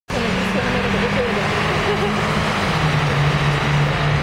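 Car engines running on a race circuit, a steady drone that drops in pitch about two-thirds of the way through, with a voice heard over it in the first half.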